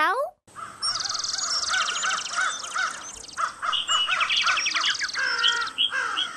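A chorus of several birds singing at once. A rising-and-falling call repeats about three times a second, over rapid high trills, and short high chirps come in near the end.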